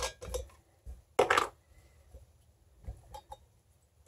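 Handling of a large glass whiskey bottle as its cap is taken off for adding vanilla beans. There are a few light clicks, one short scraping burst about a second in, then a few faint taps.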